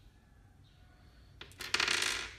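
Small candy-coated sweets dropped onto a table and clicking against the other sweets, a brief clattering rustle with a few sharp clicks near the end.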